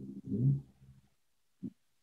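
A man's low, drawn-out hesitation sound fading out within the first half second, then silence broken by one very short low vocal sound shortly before he speaks again.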